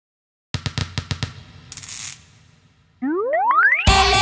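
Cartoon intro sound effects for an animated logo: a quick run of about eight drum-like taps, a short whoosh, then a steep rising whistle-like glide. Loud children's music starts just before the end.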